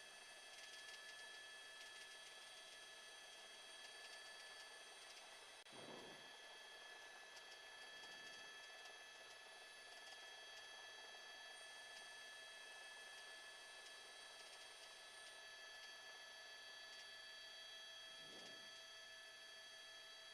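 Near silence: a faint, steady electronic hum of several thin tones, with a faint brief sound about six seconds in and another near the end.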